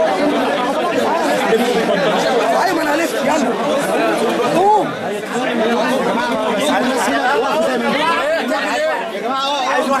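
Many people talking at once, overlapping voices in a crowded room, with one voice rising louder about halfway through.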